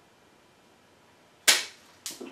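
A single sharp snap about one and a half seconds in as pruning cutters bite through a branch of a Sharp's Pygmy Japanese maple bonsai.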